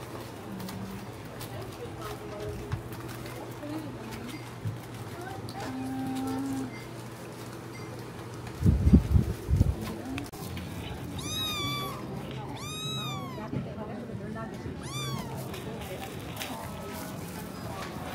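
A kitten meowing three times in the second half, high calls that each rise and fall in pitch. Just before them comes a short burst of loud, low thumps, the loudest sound here.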